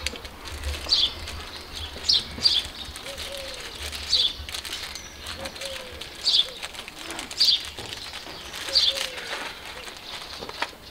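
Birds calling: a string of short, high, falling chirps about once a second, with fainter, lower calls in between.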